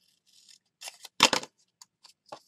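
Fiskars scissors snipping through a small piece of kraft paper: a couple of sharp cuts about a second in, the second the loudest, after some light paper rustling.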